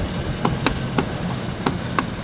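Golf cart driving: a steady low running noise with sharp clicks about three times a second.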